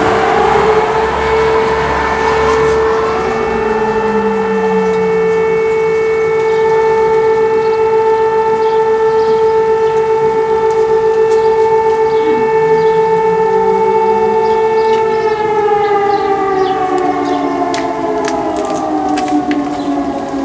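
Public civil-defence warning sirens sounding in a routine alarm test: a long, loud, steady wail. It winds up to pitch over the first few seconds, holds, then winds down in the last few seconds.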